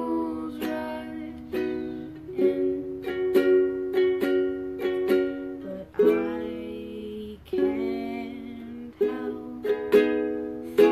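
Ukulele strummed in a steady rhythm of chords, with a young woman's voice singing over it, the sung notes clearest in the second half.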